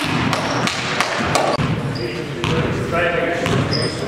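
A basketball bouncing on a hardwood gym floor: several sharp, irregular thuds, echoing in the hall among players' voices.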